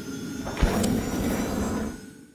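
Logo sting sound effect: a swelling whoosh that lands on a deep hit a little over half a second in, then a sustained ringing tone.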